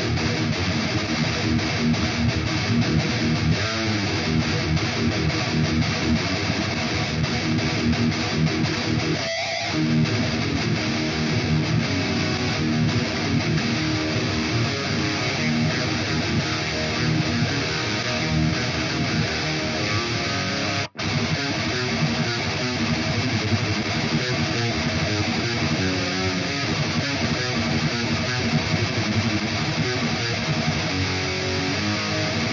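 Double-tracked distorted electric guitar riffing, switched back and forth between the microphone recordings of a 4x12 speaker cabinet and the same performance reamped through an impulse response of that cabinet; the two sound damn near identical. The playing cuts out for an instant about 21 seconds in.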